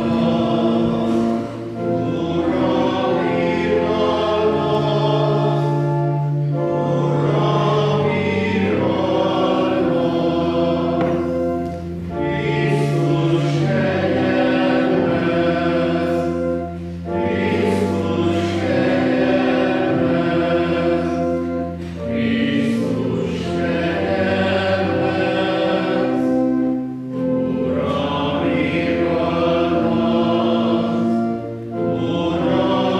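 Church choir singing a sung part of the Mass, in phrases of about five seconds with short breaks between them, over steady held low accompaniment notes.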